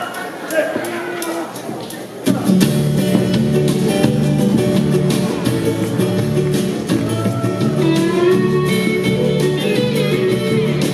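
Live band starting a song with a banjo ukulele featured. The first two seconds are sparse and quieter, then the full band comes in at about two seconds and plays on with a steady beat.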